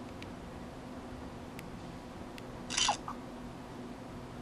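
Camera shutter sound of a Microsoft Kin One phone as a photo is taken, one short burst about three-quarters of the way in. A few faint clicks come before it, over a steady low hum.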